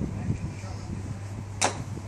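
A single sharp crack of a golf club striking a ball, about one and a half seconds in, over a steady low hum.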